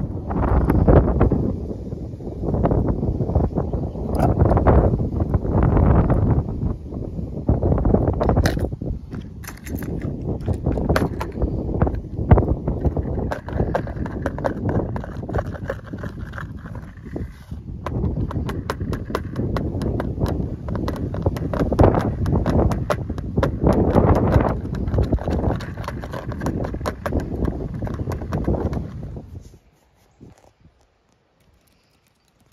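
Fingers tapping, scratching and clicking on a clear plastic compartment tackle box and on hard plastic fishing lures, recorded up close. The dense clattering swells and fades in waves and stops suddenly near the end.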